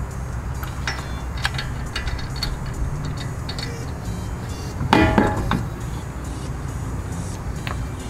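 Steel lug nuts being spun off a wheel stud by hand and set down, giving scattered light metallic clinks, with one louder ringing clank about five seconds in.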